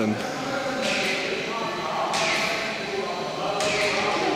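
Indistinct chatter of other people, steady and echoing in a large hall.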